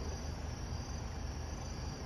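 Steady chirring of crickets over a low, constant background rumble.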